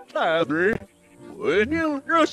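A cartoon character's high-pitched voice speaking in two short phrases, with a brief pause between them.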